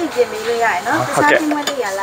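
Speech, with one short sharp knock near the start.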